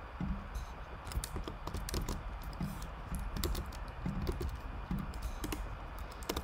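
Typing on a computer keyboard: a quick, irregular run of keystrokes.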